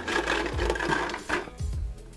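Hard plastic toy dinosaur figures rattling and clattering against one another and the plastic bucket as a hand rummages through them, a dense run of small clicks that dies down after about a second and a half.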